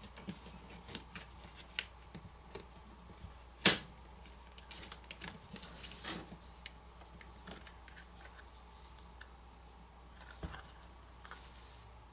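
Scattered small plastic clicks and snaps as a plastic pry pick works a smartphone's wireless-charging coil cover loose from its clips. The sharpest snap comes about three and a half seconds in.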